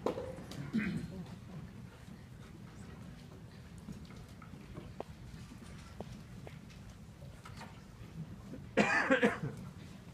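Hushed school auditorium between pieces: a low background hum with a few faint clicks, then a short loud cough near the end.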